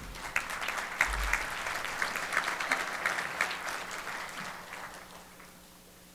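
Congregation applauding after a prayer's closing amen, many hands clapping and dying away over about five seconds.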